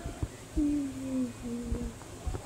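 A woman humming a slow tune without words, the held notes stepping down in pitch over about a second and a half; a couple of soft knocks.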